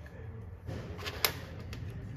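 Small metal engine parts being handled and fitted against an aluminium crankcase: light scraping, then one sharp metallic click a little past a second in, over a low steady workshop hum.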